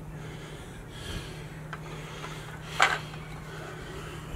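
A man breathing hard under the effort of squatting with an 80-pound sand-filled bucket, with one short, sharp, forceful exhale about three quarters of the way through.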